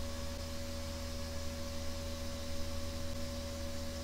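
Steady background hiss with a low hum and a few faint steady tones, the room and microphone noise of a voice-over recording between spoken lines. No other sound.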